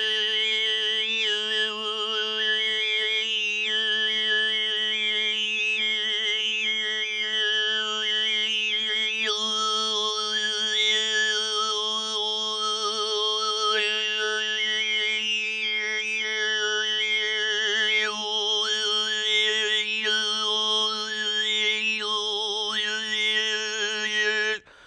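Mongolian folk song in overtone singing (khöömii): one steady low drone held throughout, with a whistling melody of overtones moving above it.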